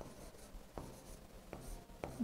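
Faint scratching of a stylus writing on an interactive display screen, with a couple of light taps.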